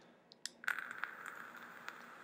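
Fire button of a copper mechanical mod clicking, then a 0.5-ohm atomizer coil sizzling and crackling steadily for about two seconds as it fires, ending with another click.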